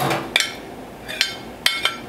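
A white ceramic plate and a utensil clinking against the rim of a glass mixing bowl as fish is tipped into the batter: several sharp, short ringing clinks, two close together near the end.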